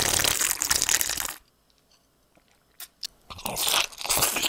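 Close-miked crunchy food being bitten and chewed, recorded on a Sennheiser MKH 416 shotgun microphone. Loud crunching stops about a second and a half in, leaving a near-silent gap with a couple of small clicks, then another burst of crunching comes near the end.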